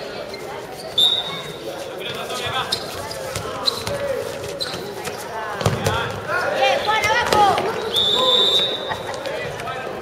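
Handball play on an outdoor concrete court: the ball bouncing with sharp knocks, and players shouting, loudest from about six seconds on. A short shrill high tone sounds about a second in and a longer one near the end.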